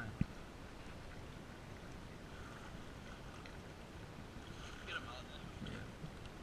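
Low, steady wash of wind and small waves lapping along a rocky shoreline, with a faint voice briefly near the end.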